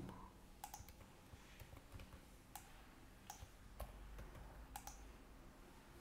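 Faint computer keyboard keystrokes: about ten isolated, irregularly spaced clicks as code is edited, over a low steady hum.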